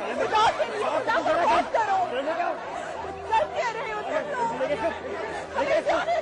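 Many voices talking and shouting over one another at once, a dense overlapping babble of a crowd in a heated confrontation.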